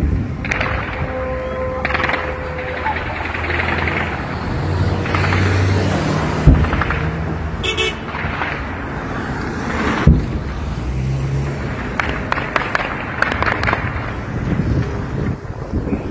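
Street noise with people's voices, car horns and traffic, broken by two sharp bangs about six and a half and ten seconds in.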